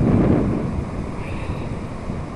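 Strong sea wind buffeting the camera microphone: a loud, low rumble that eases somewhat after about a second.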